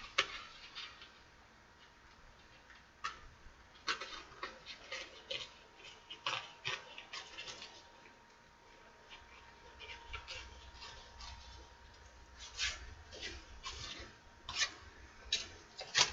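Paper and craft pieces being handled on a work table: faint, scattered rustles and light clicks, bunched more thickly around four to seven seconds in and again near the end.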